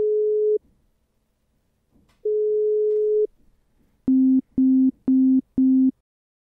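Outgoing phone call's ringback tone: two long steady beeps about a second each, roughly two seconds apart, then four short lower beeps in quick succession as the call ends unanswered.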